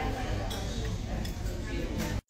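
Indistinct background chatter and room noise of a restaurant dining room, with a couple of faint clicks.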